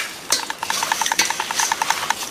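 Wooden spatula stirring and scraping a dry, crumbly flour mix in a stainless steel bowl, with a couple of sharp scrapes against the metal. A fast, even ticking of about ten a second runs underneath.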